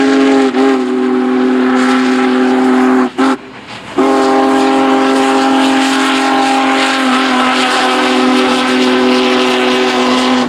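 Steam locomotive's chime whistle sounding two long blasts: the first breaks off about three seconds in, and after a short pause the second is held for about six seconds. The noise of the passing steam train runs beneath it.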